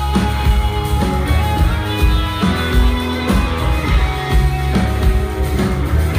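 Live rock band playing a loud instrumental passage: electric guitars with sustained chords over bass and drums, with little or no singing.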